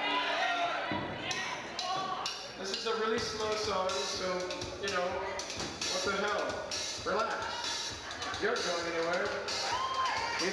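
Live rock band playing, with a male lead voice over drums and guitars; a rough, reverberant amateur recording.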